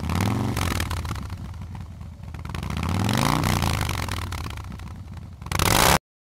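Yamaha Virago XV750 V-twin motorcycle engine revved twice, its pitch climbing and falling back each time. A short loud burst of noise comes near the end, and then the sound cuts off.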